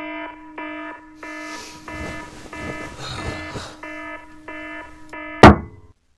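Digital alarm clock beeping, a short pitched beep about every two thirds of a second, with a rustle in the middle. About five and a half seconds in, a hand slams down on the clock with a loud smack, the loudest sound here, and the beeping stops.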